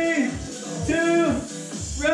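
Background music with a vocal line over a regular beat.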